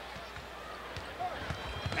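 Arena crowd murmur with several low thumps of a basketball bouncing on the hardwood court in the second half.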